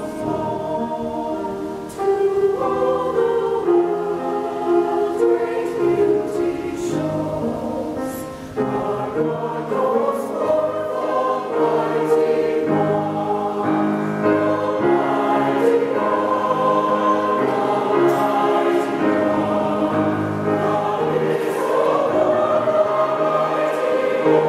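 A mixed choir of men's and women's voices singing a sacred piece in harmony, held notes shifting from chord to chord.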